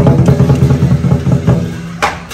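Lion dance drumming: a loud burst of the Chinese lion drum beaten rapidly, with cymbals and gong ringing over it. The burst fades near the end.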